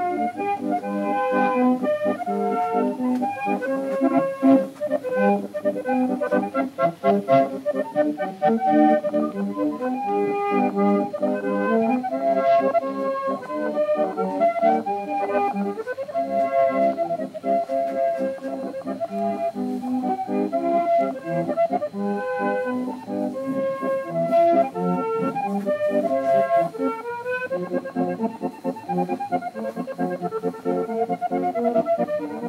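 Accordion music: a melody played over held chords, running without a break.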